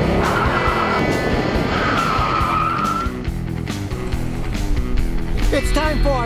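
Car tires squealing in two stretches over the first three seconds, with engine noise, laid over intro music with a steady beat that carries on after the squeal fades.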